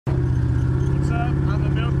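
Car engine running at a steady speed, heard from inside the cabin while driving: a deep, even drone with a rapid, regular pulse.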